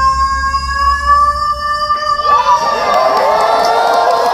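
A female singer holds one long, high sung note over a low accompaniment; it ends about two seconds in and an audience breaks into cheering and whoops.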